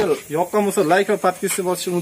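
Mostly a man speaking, over a faint steady hiss from the foam generator's hose outlet.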